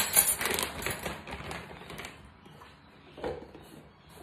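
A spoon clattering down onto a stone benchtop, followed by a run of small plastic clicks and knocks as a personal blender's blade base is handled and screwed onto its cup, with one more knock about three seconds in. No motor runs.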